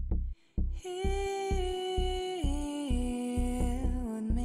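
Chillout lounge music: a deep, steady bass beat under a held, wordless melody line that steps down in pitch twice.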